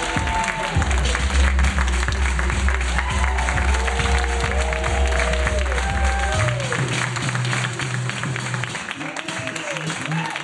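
Hip-hop dance music with a heavy bass line playing under audience applause and shouts. The bass changes about six seconds in and drops away near the end while the clapping goes on.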